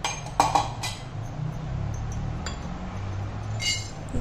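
Whole dried cloves tipped from a small bowl into a hammered stainless-steel kadai, with a few separate metallic clinks, the loudest about half a second in. A faint low hum runs underneath.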